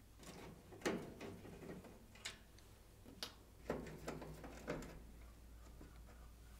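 Phillips screwdriver unscrewing screws from an oven's sheet-metal top panel: a few faint, scattered metal clicks and scrapes, with a small cluster near the four-second mark.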